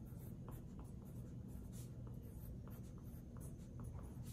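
A wooden pencil writing on a sheet of paper: faint, short scratchy strokes as characters are written, one after another, over a low steady hum.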